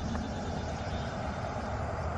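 Steady low outdoor rumble with a faint hiss over it and no distinct events.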